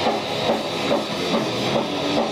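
Live heavy metal band playing loud, with distorted electric guitar and drums, heard through a camcorder's built-in microphone.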